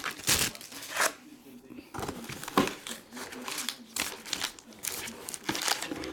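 Cardboard hobby box and wrapped trading-card packs being handled: a run of short crinkles and rustles as the box's insert is lifted out and the stack of packs is pulled from the box.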